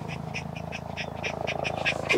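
A tired dog panting quickly, about five short breaths a second, over a low steady hum.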